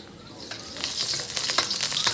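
Whole garlic cloves frying in oil in a steel wok: the sizzle starts faintly and swells about half a second in to a steady hiss flecked with small pops as the oil heats.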